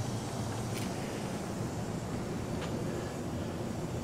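Steady background noise, a low even rumble with hiss above it, with two faint ticks about a second in and near three seconds.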